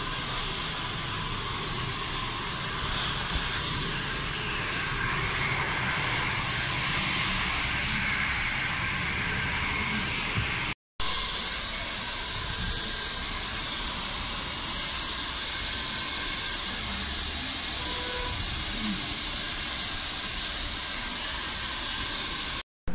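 Handheld hair dryer blowing steadily on its motor and fan, a continuous rushing hiss, with a brief break about halfway through.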